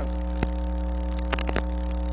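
Steady electrical mains hum in the sound system, with a few sharp clicks: one about half a second in and a small cluster past the middle.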